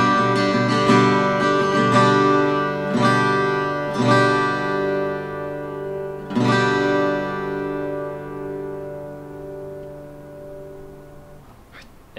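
Asturias EC Emblem OM-style steel-string acoustic guitar played fingerstyle: chords struck about once a second, then a last chord a little past halfway, left to ring and fade for several seconds before it is damped near the end.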